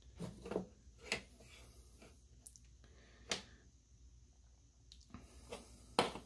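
Quiet room tone with a few faint, scattered clicks and ticks from handling small tools and a wire at a workbench.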